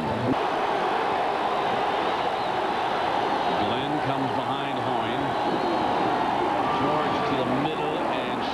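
Stadium crowd at a football game making a steady, loud roar of many voices, with single voices standing out from about halfway on.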